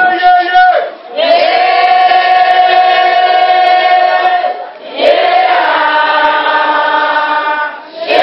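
A group of voices singing together, holding two long notes of about three seconds each, with a short break between them about four and a half seconds in.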